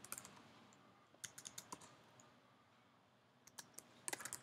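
Faint keystrokes on a computer keyboard, in two short runs of quick clicks: one about a second in, another near the end.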